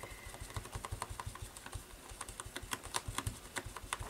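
A small sponge dabbing thick yellow paint through a stencil onto paper: quick, irregular soft taps, several a second, each with a dull thump.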